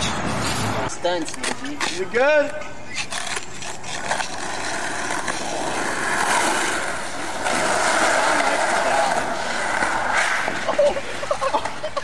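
Skateboard wheels rolling fast down a steep asphalt street: a steady rolling rush from about four seconds in until nearly the end. Brief voices and laughter come at the start, around two seconds in, and near the end.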